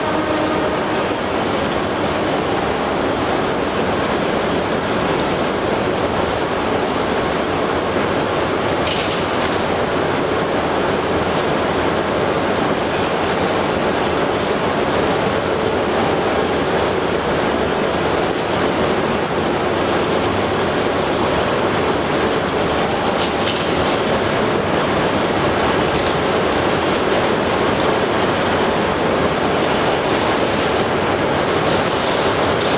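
Steady, loud mechanical whir of a standing Hayabusa shinkansen train at the platform, its cooling and air-conditioning blowers running, with two short high hisses about nine seconds in and again later.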